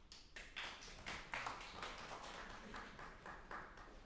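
Audience noise in a pause between songs: an irregular scatter of short, sharp sounds that starts suddenly and dies away after about four seconds.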